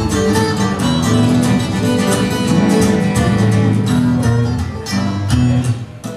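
Two acoustic guitars strumming chords together in an instrumental break between sung lines. The playing thins out briefly near the end.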